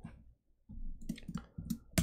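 A few faint clicks of computer keyboard keys, with one sharper click near the end.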